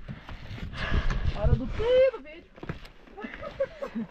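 A woman's voice making short, high, sliding exclamations and laughter-like sounds without clear words, over low rumbling thumps about a second in.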